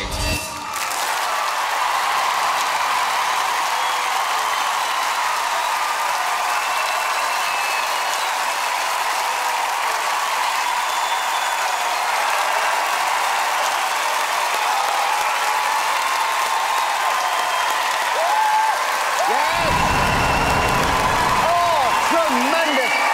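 Large theatre audience applauding and cheering steadily, starting just after the backing music stops, with shouts and whoops over the clapping. Near the end a low rumble comes in and louder voices rise over the applause.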